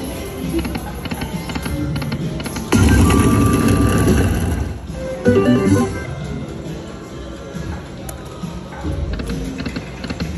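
Electronic music and jingles from an Aristocrat Lightning Link slot machine as its reels spin, with a louder stretch of about two seconds starting nearly three seconds in and a shorter burst a little later.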